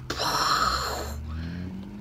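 A woman making a sound effect with her mouth: a breathy hissing whoosh for about a second that fades away, with a low hum of her voice rising slightly underneath in the second half.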